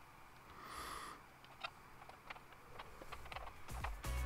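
Mostly quiet background with a short high chirp about a second in and a few faint, scattered clicks.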